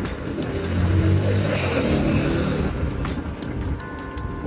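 A motor vehicle's engine hum that swells about a second in and eases off after the middle.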